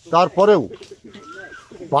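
A man talking in the first second, then a single faint bird whistle that rises and falls, a little past the middle.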